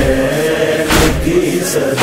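Male chorus of a noha, a Shia lament, holding a long sustained chanted note, over sharp rhythmic beats about once a second in the manner of matam chest-beating.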